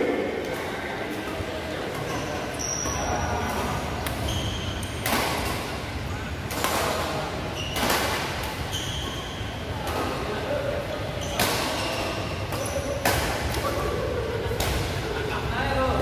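Badminton rally in a large hall: sharp racket strikes on the shuttlecock about every second and a half, with short high squeaks from shoes on the court mat between the hits.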